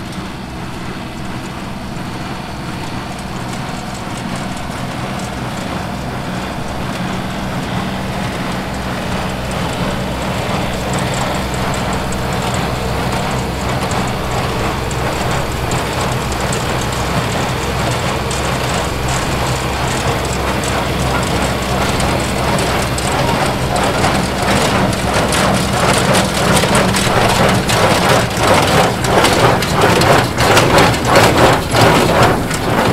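Rural King RK37 compact tractor's diesel engine running as it pulls a Ford small square baler through a hay windrow, getting steadily louder as the rig comes closer. In the last few seconds the baler's mechanism adds a regular rhythmic clatter.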